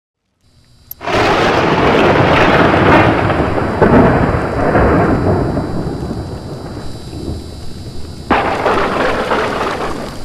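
Logo-intro sound effect: a loud crash and rumble, like thunder, that begins about a second in and slowly fades, then a second sharp crash and rumble near the end that cuts off suddenly.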